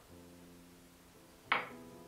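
Soft instrumental background music starting up, with a single sharp tap about a second and a half in, the loudest sound.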